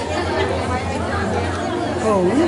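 Overlapping chatter of several people talking at once in a crowded room, with a steady low hum underneath.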